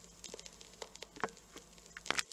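Faint recording-room noise: a low hum with a few small scattered clicks.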